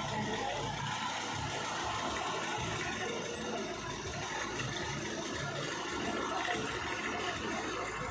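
Steady, noisy outdoor street ambience with a low rumble underneath.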